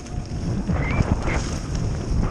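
Mountain bike riding fast down a rough dirt trail, heard from a helmet-mounted camera: wind buffeting the microphone over the steady rumble and rattle of the tyres and bike on the ground, with a brief high squeak about a second in.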